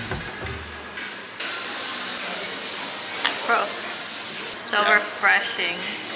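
Steady hiss that starts suddenly after about a second and a half and cuts off abruptly about three seconds later.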